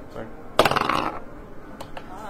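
Dice clattering as they are rolled onto a table: a sharp, rattling burst of clicks starting about half a second in and lasting about half a second.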